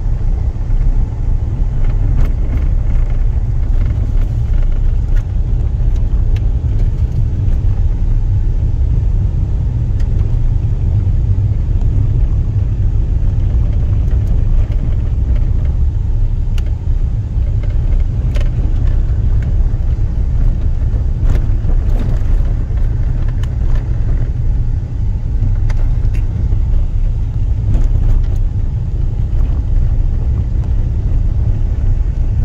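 A car driving on an unpaved dirt road, heard from inside the cabin: a steady low rumble of tyres and engine, with scattered small knocks and rattles from the rough surface.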